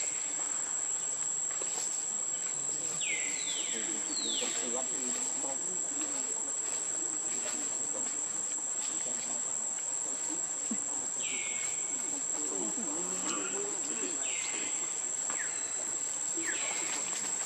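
A steady, high-pitched insect drone, like crickets or cicadas, with a few short falling whistled calls, clustered about three to four seconds in and again after eleven seconds.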